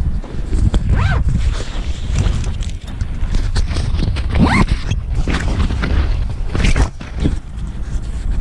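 Handling noise from a camera being carried and turned over in the hands: rubbing and knocking against clothing and skin, with a heavy low rumble of wind on the microphone. A few brief higher-pitched sounds come over it.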